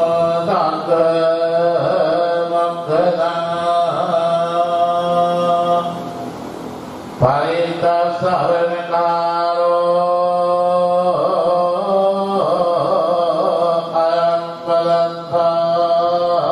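A Theravada Buddhist monk chanting Pali scripture through a microphone in a slow, melodic recitation with long held notes. There is a short break about six seconds in, and the chant picks up again about a second later.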